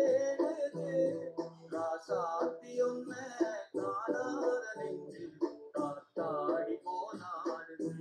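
Man singing a classic Indian film song over an instrumental backing track, heard through a video call's compressed audio.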